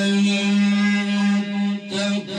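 Male Quran reciter holding one long, steady note in melodic tajweed recitation, with a brief dip near the end before the note carries on.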